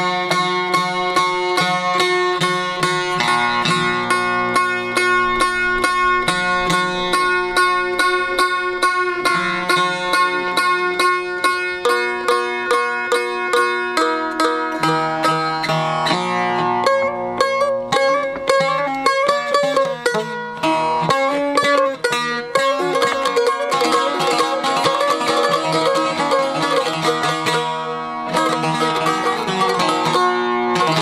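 Çifteli, the Albanian two-stringed long-necked lute, playing a fast folk tune with a steady run of plucked strokes, its loudness dipping briefly twice in the second half.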